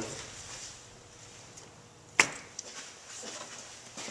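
A single sharp click about two seconds in, followed by a couple of faint ticks, over a quiet background.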